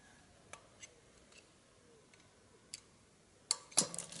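A few faint metallic clicks of a screwdriver working at the cap of a bottle of Puro Rosé sparkling wine held neck-down in a bowl of water, then near the end two sharp cracks, the louder second one as the cap lets go under the wine's pressure.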